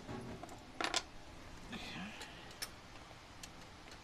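Small steel hardware and a hand tool clinking: a sharp double clink about a second in, then a few lighter ticks, as a carburetor hold-down bolt, washer and lock washer are handled.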